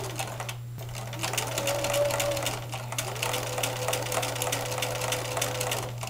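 Bernina electric sewing machine stitching, its needle going up and down in rapid, even strokes over a steady motor whine. It stops briefly just under a second in, then runs on until just before the end.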